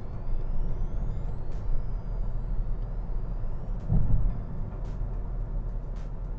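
Steady low rumble of road and engine noise heard inside a moving car's cabin, with a brief louder low thump about four seconds in.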